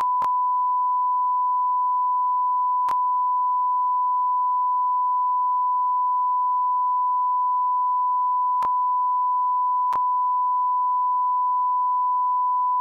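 Broadcast line-up test tone: a single steady 1 kHz pitch held without a break, sent with colour bars while the programme feed is off. Four brief faint clicks cut across it: one just after the start, one about three seconds in, and two close together near nine and ten seconds.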